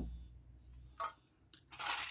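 Small plastic cups and dried beans being handled on a granite countertop: one light tap about halfway through, then a short rustle near the end as the cup of beans is picked up.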